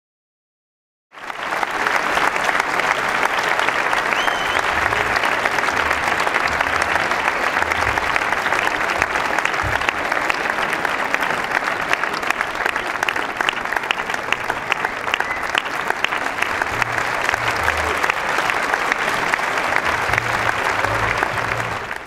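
Live audience applauding: dense, steady clapping that starts abruptly about a second in and holds an even level without a break.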